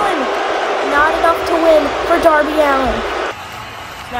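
A voice speaking over a steady rush of background noise, which cuts off abruptly a little over three seconds in.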